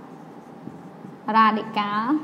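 Marker writing on a whiteboard, faint scratching strokes with a few light ticks, followed by a woman's voice speaking from about a second and a half in.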